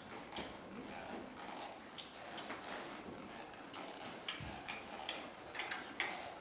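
A ridden horse moving on soft arena footing: irregular light clicks and scuffs of hooves and tack, with one dull thump a little after four seconds in.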